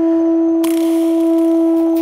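Background music score: one low note held steadily, like a synth or woodwind drone, with a soft hissing wash joining about half a second in.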